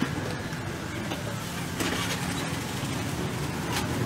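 Outdoor night-market background noise dominated by a steady low motor rumble, with a brief clatter about two seconds in and another near the end.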